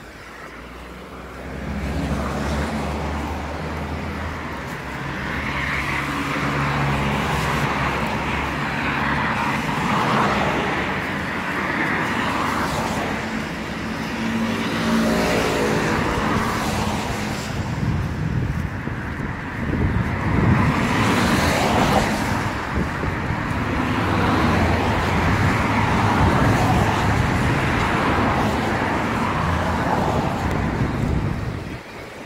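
Road traffic on a wet, snowy street: cars driving past close by, their engines running and their tyres loud on the wet road surface, the noise swelling about two seconds in.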